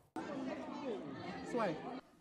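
Indistinct chatter: several people's voices talking over one another, none clear enough to make out, starting a moment in and breaking off at the end.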